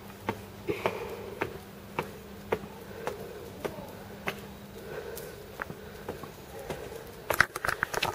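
Footsteps climbing wet tiled steps: sharp clicks at about two a second, with a quick flurry of clicks and handling noise near the end.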